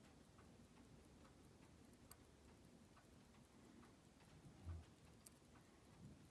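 Near silence with a few faint, light metallic clicks as steel tweezers touch the open watch case and movement, and a soft handling bump a little past the middle.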